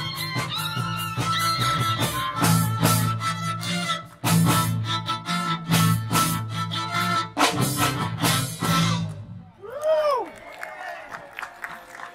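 A live string band of violin, viola, cello, drum kit and electric bass plays an instrumental pop mashup, ending on accented hits and stopping about nine seconds in. A single voice then calls out briefly, its pitch rising and falling.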